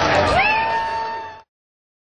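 A single drawn-out whoop from someone in the crowd, sliding up in pitch and then held, over general crowd and hall noise. The audio cuts off abruptly about one and a half seconds in.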